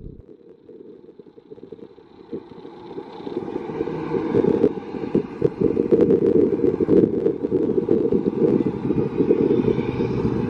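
Low rumble of a steel hyper coaster train running on its track, swelling from quiet over the first few seconds to a steady loud rumble with scattered sharp rattles.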